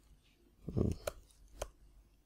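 Computer keyboard keystrokes: a soft low thud a little before a second in, then two sharp key clicks about half a second apart.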